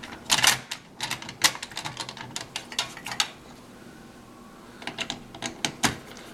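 Screwdriver tightening the mounting screws of a CPU cooler: irregular runs of small sharp clicks of metal on metal and plastic, in two bursts with a short quieter pause between.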